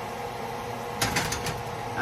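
Diced potatoes frying in a skillet with a steady sizzle, and a spatula stirring and scraping in the pan in short strokes from about a second in.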